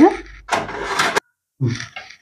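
Thin plastic bread bag holding pav buns crinkling for under a second, starting about half a second in.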